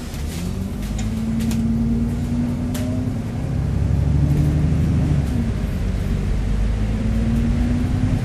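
Alexander Dennis Enviro400MMC double-decker bus heard from inside the cabin as it pulls away and accelerates. Its Cummins diesel climbs in pitch and grows louder, then drops back at a gear change in the Voith automatic gearbox about three seconds in and climbs again near the end. A few light rattling clicks sound in the first seconds.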